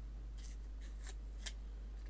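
Paper and double-sided tape being handled at a craft table: about four short, crisp ticks and rustles at uneven intervals, over a steady low hum.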